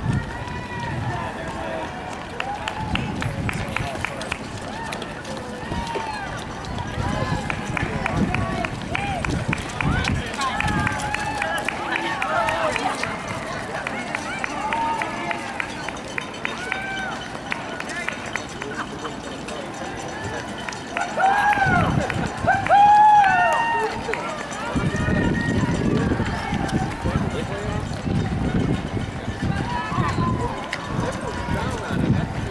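Many runners' shoes slapping steadily on asphalt as a pack of marathoners passes, with spectators' voices calling and cheering over it; the voices rise to louder shouts about three-quarters of the way through.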